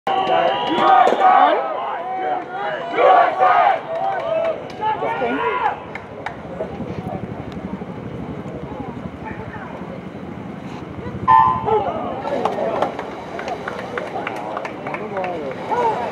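Voices over a poolside crowd, then a hush of several seconds, broken about eleven seconds in by a short electronic starting beep for a swimming race. Voices pick up again after the start.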